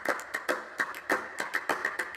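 A quick run of light, dry percussive taps, about six a second, opening the background music track.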